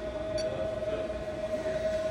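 Two tiny 10 mm brushless motors and propellers of a small twin-engine foam RC warbird, running at a steady whine with an even pitch.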